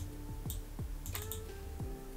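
Soft background music with a steady beat, with a few quick clicks of a computer keyboard: one about half a second in and a fast run of three a little after a second.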